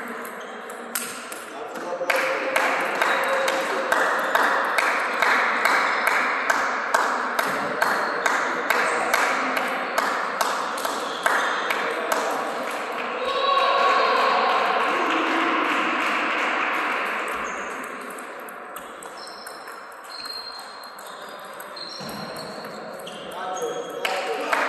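A table tennis rally: the ball pocking back and forth off bats and table in quick, even clicks, about two to three a second, which stop after about twelve seconds when the point ends. Voices follow in the hall.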